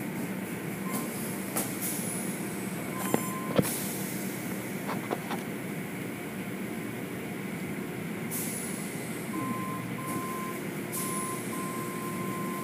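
Automatic car wash heard from inside the car: a steady machinery hum with water spray and cloth strips washing over the car. A couple of sharp knocks come a few seconds in, and a beep repeats in short pulses over the last few seconds.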